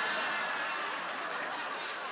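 Studio audience laughing together, a dense wash of laughter that slowly dies away.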